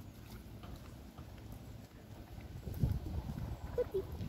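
Footsteps on asphalt under a low rumble of wind on the microphone. The steps get louder about three seconds in, and a brief high squeak comes near the end.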